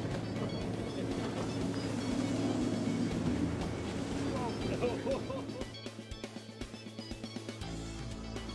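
Background music over the running noise of a boat's outboard motor pushing through choppy wake water, with a voice calling out briefly about five seconds in. From about six seconds in the boat noise drops away and the music with a steady beat plays on its own.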